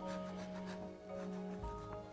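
Soft instrumental background music with held notes, and under it a faint scratchy scraping of a serrated knife trimming the crust off a chilled cake.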